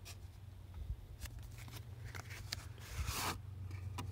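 Cardboard knife packaging being handled and moved: a few light taps and rustles, then a brief scraping slide about three seconds in.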